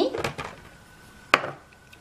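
A few light clicks of a plastic measuring cup and vegetables dropping into a plastic food container, then one sharp knock a bit past halfway as the cup is set down on the counter.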